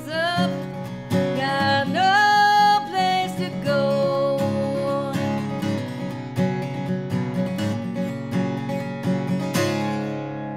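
A woman singing to her own steel-string acoustic guitar. A long held sung note comes about two seconds in, over steadily strummed and picked chords, and a final chord rings out at the end as the song finishes.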